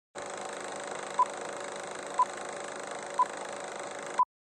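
Film countdown leader: a short, high beep once a second, three times, over a steady hiss of old film-soundtrack noise.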